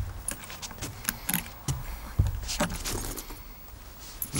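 Small objects handled at close range: a run of light clinks and rattles, with a dull thump at the start and another about two seconds in.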